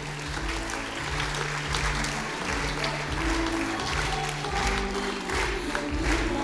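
Congregation applauding, with instrumental music playing underneath; its low notes are held and change every second or two.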